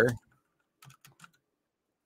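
A few quick computer keyboard keystrokes, about four or five short clicks close together about a second in.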